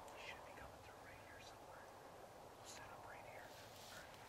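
A man whispering in two short spells, faint against near silence.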